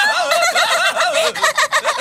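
A cartoon character's voice making a rapid, high-pitched gabbling vocal sound: a quick run of short syllables, each rising and falling in pitch, several a second.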